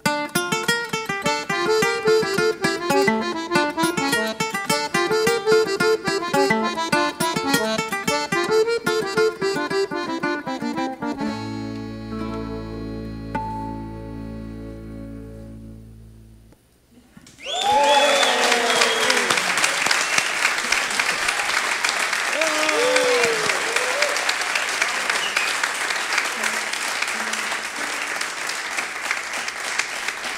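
Venezuelan cuatro strummed in fast rhythmic chords together with accordion and bass, the tune closing on a long held final chord that fades out about two-thirds of the way through. After a moment's hush the audience breaks into loud applause with cheering that carries on to the end.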